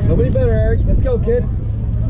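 A voice calling out in drawn-out, sung-out tones about a quarter-second in, over a steady low rumble of wind on the microphone.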